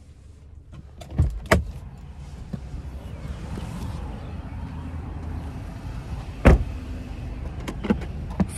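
SUV rear side door: two latch clicks about a second in as it opens, then low steady background noise, and the door shutting with one heavy thump, the loudest sound, about six and a half seconds in.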